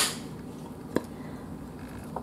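A ceramic plate being handled: two brief clicks about a second apart, the first louder, over quiet room tone.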